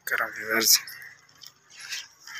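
A man's voice speaking briefly for under a second, then a quieter pause with only faint background.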